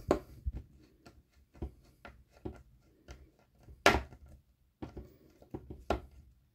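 Small screwdriver turning a tiny self-tapping screw into a plastic model part, heard as scattered light clicks and taps of tool and plastic, the sharpest about four seconds in. The screw is driven until it bites into the plastic and sits firm.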